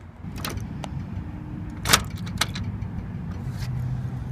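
A metal cluster mailbox being opened with a key: a few sharp metallic clicks and rattles, the loudest about two seconds in, over a steady low hum.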